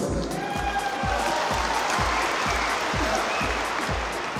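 Audience applauding over background music with a steady bass-drum beat, about three beats a second.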